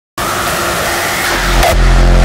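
Opening of a hardstyle track: a loud wash of noise with a held high tone starts suddenly just after the start, then a deep bass hit lands near the end.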